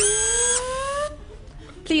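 Stage sound effect of a robot powering up: a rising electronic tone in two climbing pitches that stops about a second in.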